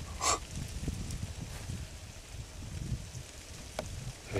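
Wind buffeting the microphone, giving an uneven low rumble, with a brief hiss about a quarter second in and a small click near the end.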